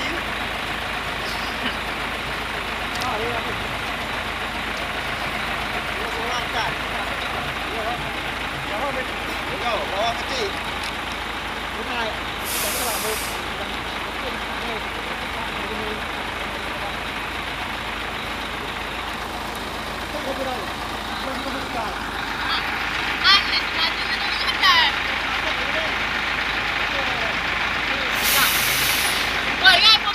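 Heavy diesel truck engine running steadily with a loaded flatbed tractor-trailer that cannot make the climb, and two short air-brake hisses, one about halfway through and one near the end. Voices and laughter come in over the last few seconds.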